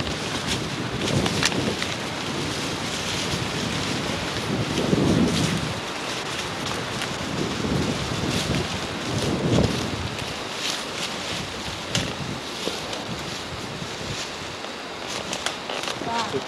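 Crunching and rustling through dry fallen leaves and brush as people walk, with irregular crackles and wind buffeting the camcorder microphone.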